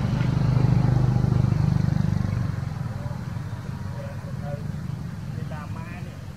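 A low engine-like hum, loudest over the first two seconds and then fading away, as of a motor vehicle passing. Faint higher calls come in near the end.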